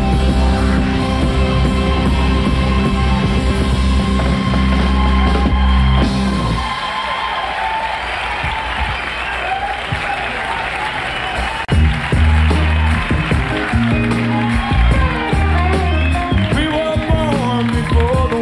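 A live rock band ends a song on sustained bass and chords, which stop about six seconds in; audience applause follows, and about twelve seconds in the band starts the next song.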